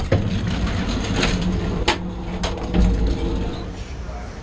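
Door latch and door on an Amtrak Superliner train clicking and clanking as they are worked by hand: several sharp knocks over the steady rumble of the moving train. The sound drops away just before the end.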